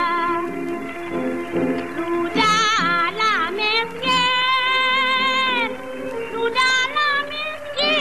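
A woman singing a Malay song with a wide vibrato, holding long notes, over an instrumental accompaniment that carries on alone for a moment early on between her phrases.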